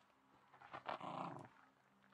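A dog growling once, a rough growl of under a second starting about three quarters of a second in, during play with a ball.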